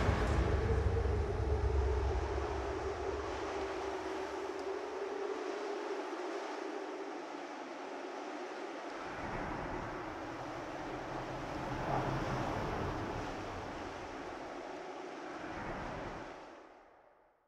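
Steady, wind-like rushing noise with a sustained low drone under it, slowly getting quieter and fading out at the end.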